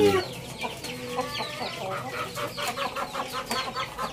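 Chickens clucking: a fast, even run of short calls, about five a second.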